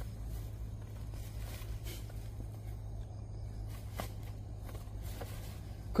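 Faint scuffing and a few soft clicks from a handheld jab-type seedling transplanter being pushed through black plastic mulch into the soil and worked open, over a steady low rumble.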